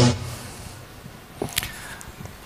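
Music cuts off right at the start, leaving quiet hall room noise with a single brief knock or click about one and a half seconds in.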